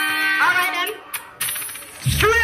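Sound-system audio between tunes: a held electronic note with several overtones cuts off about half a second in, followed by a brief pitched vocal-like phrase and then a quieter stretch with a few sharp clicks.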